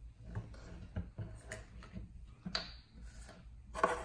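Plastic screw cap of a water bottle being twisted off, giving a scatter of small clicks and plastic crackles, then a sharper knock near the end as the cap and cups are handled on a wooden table.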